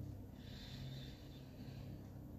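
A woman breathing in slowly through her nose during a deep-breathing exercise: a faint airy hiss that swells about a third of a second in and fades after about a second and a half, over a low steady room hum.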